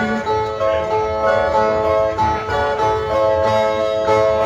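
Two steel-string violas of a northeastern Brazilian cantoria duo playing the short instrumental interlude between sung stanzas, with notes plucked and held in turn.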